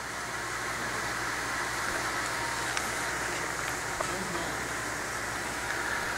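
Steady rushing room noise with faint, indistinct voices beneath it.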